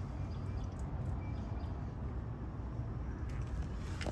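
Steady low outdoor background rumble with no distinct events, and a faint short high chirp about a second in.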